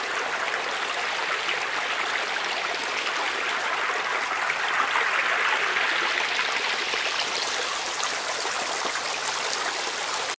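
Ambience field recording playing back as a steady noisy wash, with a narrow EQ boost swept through the upper mids. The boosted band swells around the middle and moves higher toward the end, bringing out a sizzle like frying a steak along with boiling potatoes.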